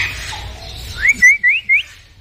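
Four short rising whistles in quick succession in the second half, each sweeping up in pitch.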